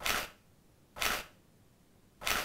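Camera shutter firing twice, about a second apart, each a short sharp snap.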